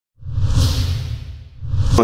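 Two whoosh sound effects over a low rumble: the first swells in just after the start and fades, and the second rises toward the end.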